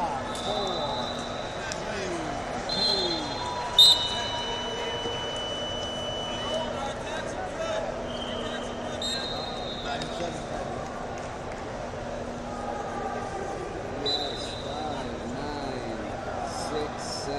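Chatter of a crowded sports hall, with several short, high, steady whistle tones from the wrestling mats. A sharp, loud hit comes just before 4 s, then a long high tone of about three seconds as the period ends.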